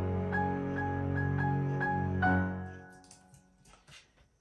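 Piano and string ensemble playing back from a music production session, run through a subtle distortion plugin: sustained string chords under short repeated piano notes. The music fades out about two and a half seconds in, leaving a few faint ticks.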